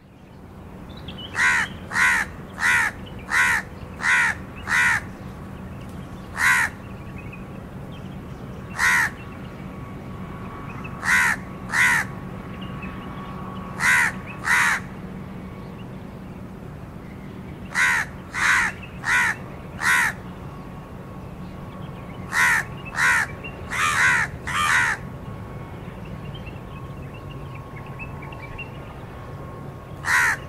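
House crow cawing: short, harsh caws in quick runs of two to six, with pauses of a second or more between runs.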